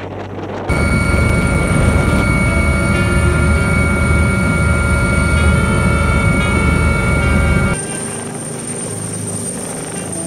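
Helicopter heard from inside its cabin: a loud, steady low rotor and engine rumble with a steady high turbine whine over it. It starts suddenly just under a second in and cuts off abruptly near the eighth second, after which the helicopter is heard more quietly from outside.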